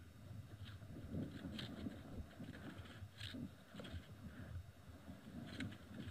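Quiet outdoor ambience: a faint, uneven low rumble with a few brief, faint high-pitched sounds.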